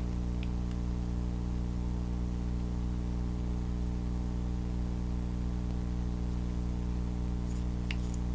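Steady electrical hum with a buzz of evenly spaced overtones over a faint hiss, holding level throughout; a couple of faint clicks near the end.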